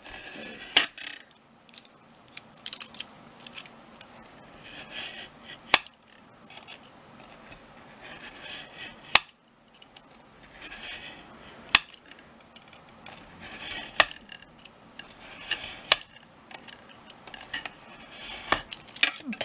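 Craft knife drawn again and again along a steel ruler, scoring through thick layered card: a scratchy scrape with each stroke, taking several passes because the board is too thick to cut in one. Sharp clicks come every few seconds between the strokes.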